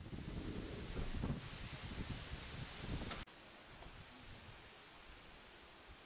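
Wind buffeting the camera microphone outdoors in gusts. About three seconds in it cuts off abruptly, leaving a faint steady hiss of outdoor background.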